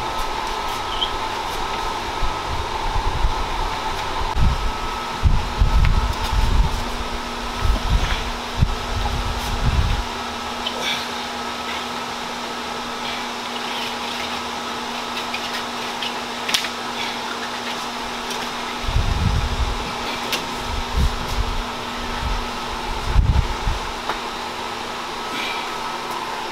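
Steady mechanical hum with a faint constant whine, like an electric fan running. Bouts of low rumbling come and go in the first ten seconds and again near the end.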